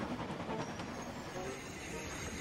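Sound effect of a steam express train passing, its noisy rumble and hiss fading away.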